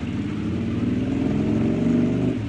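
A motorcycle engine running as it passes along the road, growing steadily louder with a slight rise in pitch.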